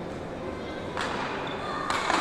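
An ecuavoley ball struck hard about a second in, with an echo in the large sports hall. Louder shouting and commotion from players and spectators build near the end.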